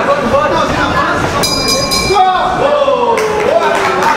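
Voices shouting at ringside during a boxing bout, including one long drawn-out call near the end. A brief high ringing tone sounds about a second and a half in.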